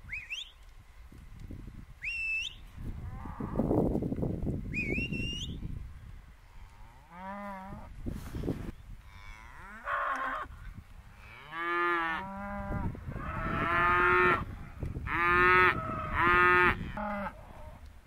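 Hereford and Angus steers and heifers mooing, several calls one after another in the second half, the loudest near the end. Before the mooing, three short rising whistles over a low rustling.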